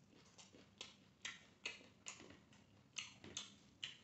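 Faint close-miked chewing: wet mouth clicks and smacks, roughly two a second, as a man chews a hand-fed mouthful of rice, fried fish and greens.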